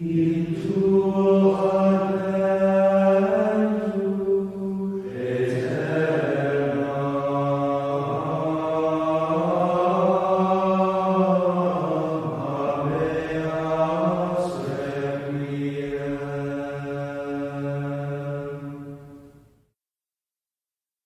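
Sung chant used as closing music: voices holding long notes that move slowly from pitch to pitch, with no instruments, fading out near the end.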